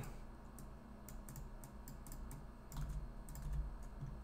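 Faint, scattered clicks of computer keyboard keys, a few irregular keystrokes as code is copied and pasted.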